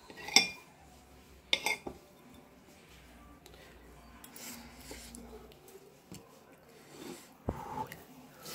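Cutlery clinking against a plate: a sharp clink just after the start, two more about a second and a half in, and a duller knock near the end, with faint scraping in between.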